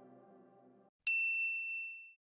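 The tail of an outro music chord fading out, then about a second in a single bright, high sound-effect ding that rings for about a second and dies away.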